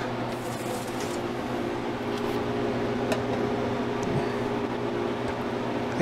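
Harvest Right freeze dryer running in its drying cycle: a steady electrical hum with even, unchanging tones. A few light ticks as a metal tray is handled and set on a scale.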